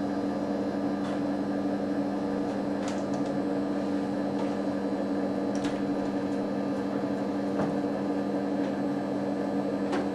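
Steady electrical hum and fan noise from running computer equipment, a low two-note hum over an even rushing noise, with a few faint clicks.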